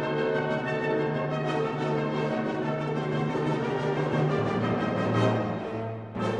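Orchestral film score with brass and strings holding sustained chords. The bass note steps lower about two-thirds of the way through.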